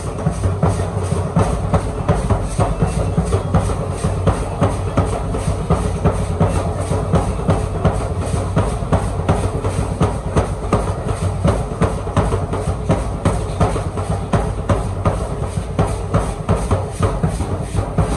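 A large dance drum beaten in a steady, driving rhythm, with the rattling of many hand-held gourd rattles shaken by the dancers along with it.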